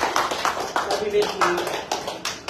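A small group of people clapping, dying away near the end, with a few voices over it.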